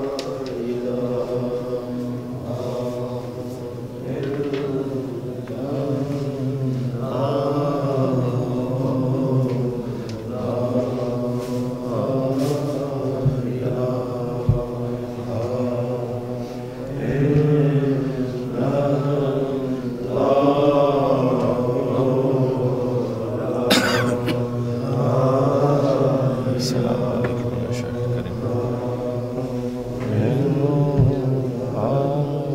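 Male devotional chanting in long, drawn-out melodic phrases, sung without a break, with a sharp click about two-thirds of the way in.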